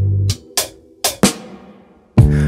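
A song drops to a sparse drum break. The sustained bass and chords stop about a third of a second in, leaving a handful of sharp drum hits in two small clusters.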